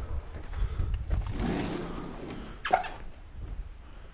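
A sliding glass patio door being opened, with a low rumble of movement and one short, sharp sound about two and a half seconds in.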